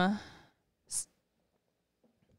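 A held hum of "um" trailing off, then one short, sharp breath out about a second in.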